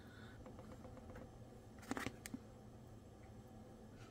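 Faint room tone with a low steady hum, broken by two soft clicks about two seconds in.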